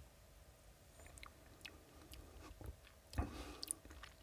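Faint mouth sounds of a man tasting a sip of spirit: small wet clicks and lip smacks, the loudest about three seconds in.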